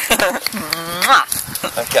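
A person laughing in breathy, bleating bursts, then saying "okay" near the end.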